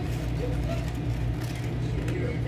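A steady low hum of running machinery, with faint voices in the background.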